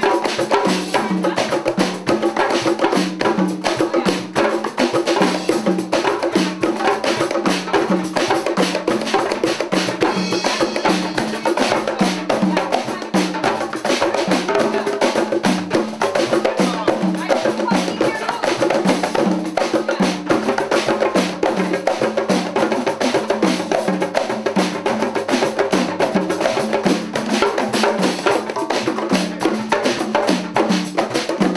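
Ensemble of hand drums and drum kit (djembe, congas, bongos, cajon and kit) playing one steady, repeating groove together.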